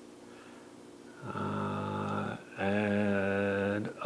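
A man humming two long, steady notes at one pitch, the first starting about a second in and the second following after a short break.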